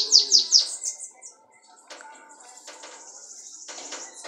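Bananaquit (sibite) singing: a quick run of high, falling notes in the first second, then after a short pause a thin, high, buzzy trill held for about two seconds.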